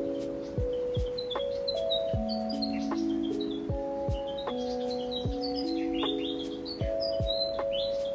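Background music: soft sustained chords that change every second or so over slow, soft low beats, with clusters of short high bird-like chirps through it.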